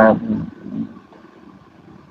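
A man's brief hesitant 'à' at the very start, then a pause in which only a faint steady hiss remains.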